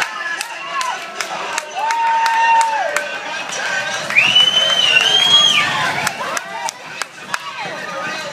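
Grandstand crowd cheering and shouting at a chuckwagon race, with a held shout about two seconds in and a louder, high-pitched held cry about four seconds in.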